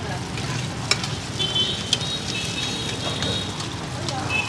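Cubes of taro rice-flour cake and egg sizzling steadily in hot oil in a large flat iron pan. A metal spatula and ladle scrape and tap against the pan now and then as the food is stirred.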